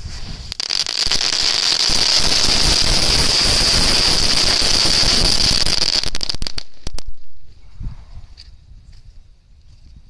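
A mirchi ladi, a string of small chili-shaped firecrackers, going off in a rapid, continuous rattle of pops for about five seconds, then a few last separate pops before it stops.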